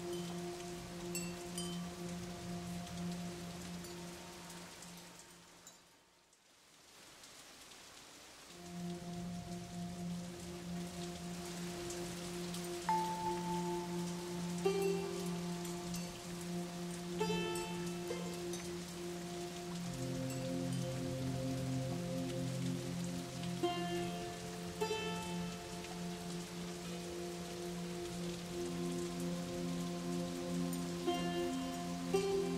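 Calm background music: held chords with short bell-like mallet notes over a steady rain-like hiss. It fades out about five seconds in and comes back about two seconds later.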